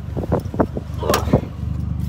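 Truck engine running low and steady, heard from inside the cab, with a series of knocks and rattles in the first second and a half.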